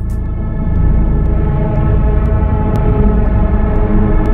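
Ominous sustained synthesizer drone in a film soundtrack: held tones over a low rumble, with a faint tick about twice a second.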